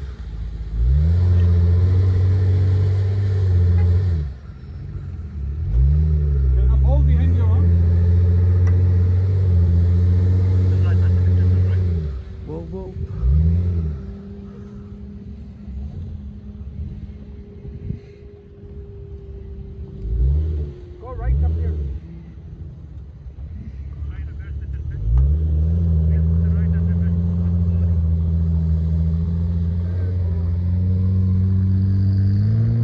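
Jeep Wrangler's engine revving hard as the vehicle struggles through soft dune sand. It holds long high-rev pulls near the start and again near the end, with a quieter stretch in the middle broken by several short rev blips.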